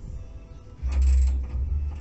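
A dull, low thump with a brief rush of noise about a second in, lasting under a second.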